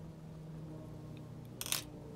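A short clink of small hard objects knocking together, about a second and a half in, over a faint steady low hum.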